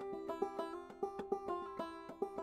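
Banjo played clawhammer style in C tuning: a steady stream of struck single notes and brushed strums, several a second, each ringing on into the next.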